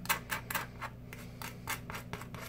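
A table knife scraping Vegemite across dry toast in quick, irregular short strokes, about a dozen in two seconds.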